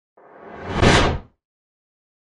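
A whoosh sound effect that swells for about a second and then cuts off quickly.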